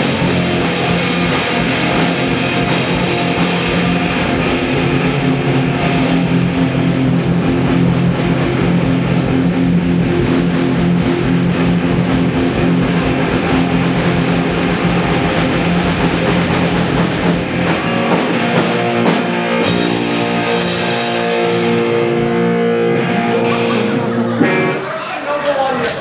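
Live punk rock band, with distorted electric guitars, bass guitar and a drum kit, playing loudly. About 17 seconds in, the bass and kick drum drop out, leaving a few sharp hits and then held, ringing guitar notes.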